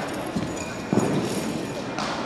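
Feet striking a carpeted competition floor during a wushu spear routine: a light thump about half a second in, then a heavier landing thud about a second in as the athlete comes down from a jump into a low stance.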